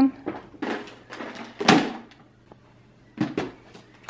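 Handling noise: a few short rustles and bumps, the loudest just before the midpoint, then a quiet pause and two more brief rustles near the end.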